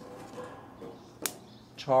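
A single sharp click about a second in, as charred, soaked cedar grilling planks are turned over with tongs on a hot gas grill grate. A man starts speaking near the end.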